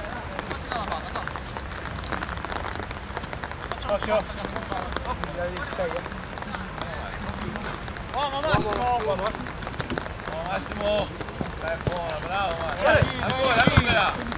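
Footballers' shouts and calls during play on an artificial-turf pitch, in short bursts, over a steady background hiss. There are a few sharp thuds near the end.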